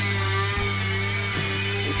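Live psychedelic rock playing: layered sitar lines over a steady low drone.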